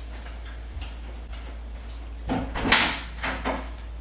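A kitchen cabinet being opened, with a sliding rattle a little past halfway and a few lighter knocks after it.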